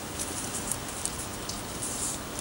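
Paper raffle tickets being handled and folded, giving faint light crinkles and ticks over a steady background hiss, most of them near the end.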